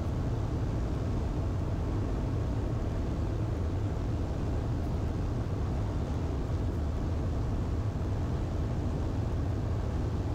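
Cockpit sound of a 1948 Ercoupe 415-E in cruise flight: its Continental O-200 four-cylinder engine and propeller droning steadily, deepest in the low end, with no change in power.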